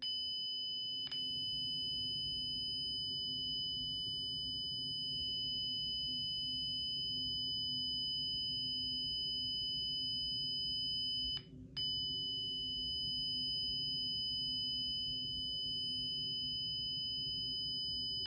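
Honeywell Lyric security panel sounding its burglary alarm for a tripped front door zone: a steady, high-pitched siren tone. It breaks off briefly about eleven and a half seconds in.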